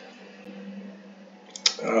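Quiet room tone with a faint steady hum. Near the end comes a single sharp click of a computer mouse as the browser switches pages, then a man's hesitant "um".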